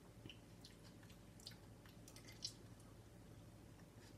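Faint, wet mouth sounds of someone chewing a chilli pod, with scattered soft clicks and one sharper click about two and a half seconds in.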